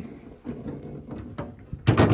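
A few light clicks and rattles, then near the end a short metal clunk and rattle as a hinged panel at the back of the car is swung down.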